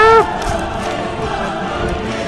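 Choral chant music with steady held chords, opened by one loud solo voice call that rises and then falls in pitch over about half a second.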